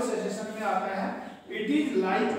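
Speech: a lecturer talking, with a brief pause about one and a half seconds in.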